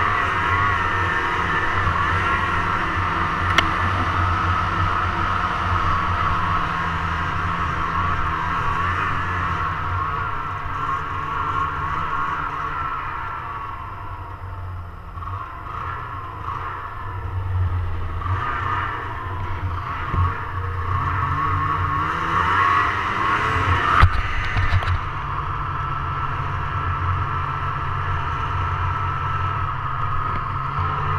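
Snowmobile engine running under way through the snow, mostly steady, with its pitch dipping and climbing as the throttle eases and opens through the middle. A single sharp knock sounds about 24 seconds in.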